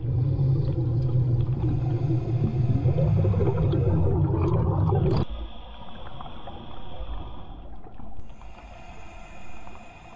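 Underwater noise picked up close to a snorkeler's head: a loud low rumble of moving water for about five seconds, then a sudden drop to a much quieter hiss with faint steady high tones.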